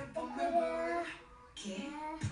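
Pop song with a high singing voice playing from a television, the voice holding one long note in the first second before the music briefly drops and picks up again.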